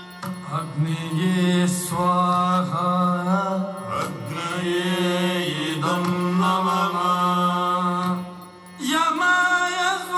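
Yakshagana accompaniment: a singer's chant-like vocal line over a steady drone, with a few sharp percussion strokes. The singing pauses briefly near the end, then starts again.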